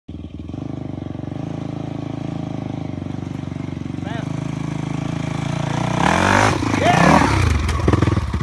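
Dirt bike engine running steadily and growing louder as it approaches, then revving hard with rising and falling pitch about six seconds in as the bike is ridden over a fallen log.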